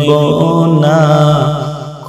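A voice singing a long held, wavering note of a Bengali Islamic gojol over a steady low drone, fading toward the end of the phrase.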